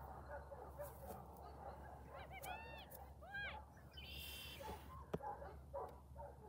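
Two short, faint animal calls that rise and fall in pitch, about two and three seconds in, followed by a brief buzzy high note and a couple of sharp clicks near the end.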